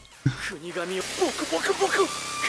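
Anime episode soundtrack: a character's voice speaking softly, with an even hiss coming in about halfway through.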